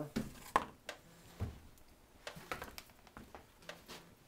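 Polyester aircraft covering fabric crinkling and rustling as a fabric-covered frame is turned over on flattened cardboard, with a few short, light knocks, the sharpest about half a second in.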